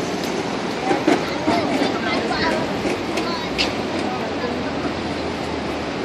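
Steady city street noise from passing traffic, with a few brief, faint voices of people nearby.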